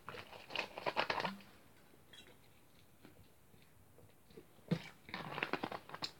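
A person taking a drink close to the microphone: short spells of gulping and handling clicks in the first second or so and again near the end, quiet in between.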